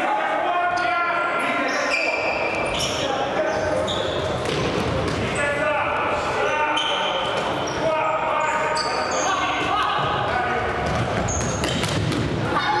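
Indoor futsal play: ball kicks and bounces, sneakers squeaking on the court floor, and players shouting, all echoing in a large sports hall.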